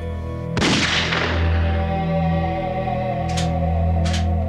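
A single gunshot about half a second in, its report ringing away over the next second, over dark sustained background music.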